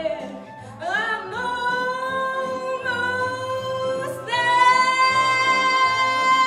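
A woman sings into a handheld microphone over instrumental accompaniment. She holds one long note, then about four seconds in moves up to a higher, louder note and sustains it.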